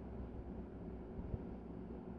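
A pause in speech filled by steady low background hum and hiss, with one faint tick about a second and a half in.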